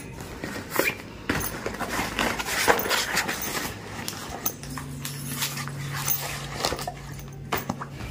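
Handling noise from packing a plastic tiffin box into a fabric school backpack: scattered rustles, scrapes and light knocks. A low steady hum joins about halfway through.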